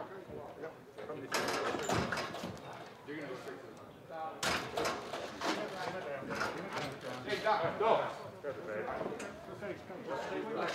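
Indistinct voices of several people talking over one another in a large room, with sudden knocks about a second in and again past four seconds in.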